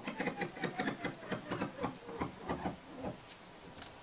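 A music track being scratched on DJ Emulator's touchscreen scratch platter: rapid, choppy back-and-forth cuts of the playing sound, dying down about three seconds in.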